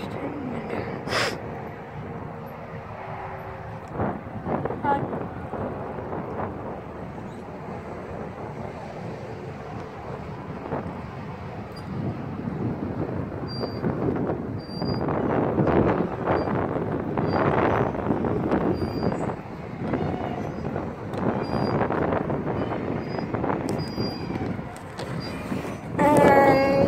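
Wind buffeting the microphone in uneven gusts, with children's voices from a playground in the background.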